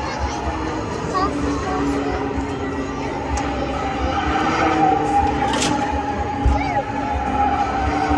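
Burnout-event din heard from the grandstand: PA music and crowd noise mixed with a car's engine held at high revs in the distance as it spins in a burnout.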